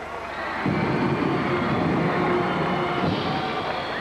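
Arena crowd cheering and clapping for a player just introduced, with music from a band playing underneath. The cheer swells about two-thirds of a second in and eases off near the end.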